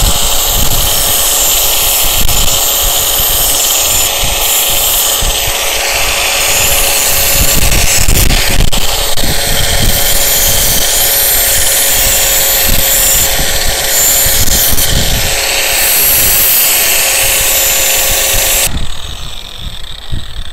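Angle grinder with a thick grinding wheel running with a steady whine while a steel knife blade is ground against the wheel to sharpen it, the grinding noise shifting as the blade is moved across the wheel. The grinder noise cuts off near the end.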